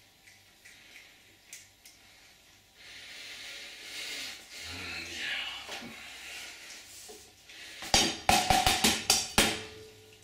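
An egg tapped against the rim of a stainless steel bowl to crack it: a quick run of about seven sharp knocks near the end, after a softer stretch of rustling and handling.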